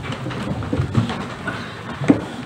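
Room noise of people sitting back down after standing: chairs shifting and scraping, with scattered low knocks and rustles.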